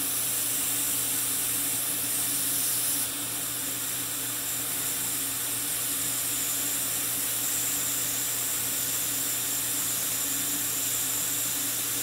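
Steady hiss with a faint low hum under it; the highest part of the hiss drops a little about three seconds in.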